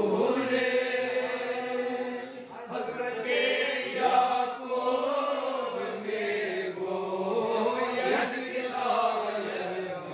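Unaccompanied male chanting of a devotional recitation, sung in long, slow melodic phrases with held, gliding notes and brief pauses for breath.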